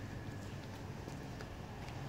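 Faint footsteps on concrete: a puppy's paws and a person's bare feet, heard as soft light ticks over a low steady hum.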